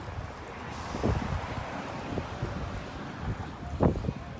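Wind buffeting a phone's microphone outdoors, a steady low rumble, with a few soft thumps, the loudest near the end.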